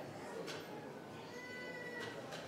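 Low background sound of a congregation moving about in a church sanctuary, with faint voices and shuffling. There is a sharp click about half a second in, and a brief thin high-pitched tone near the end.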